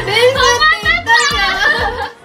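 Two women laughing hard, with high-pitched squeals, over background music with a steady beat.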